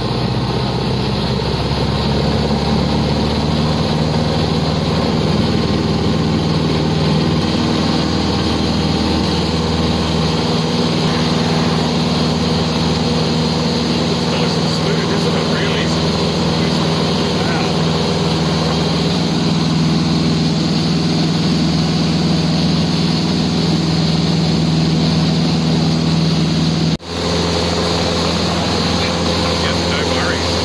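Single-engine light aircraft's piston engine and propeller running at takeoff power, heard from inside the cabin: a loud, steady drone that builds over the first couple of seconds as the plane rolls down the runway and lifts off. The sound cuts out for a moment near the end.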